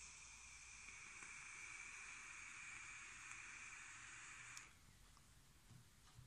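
Faint steady hiss of air drawn through a rebuildable tank atomizer during a long vape inhale. It stops suddenly with a small click at just under five seconds in.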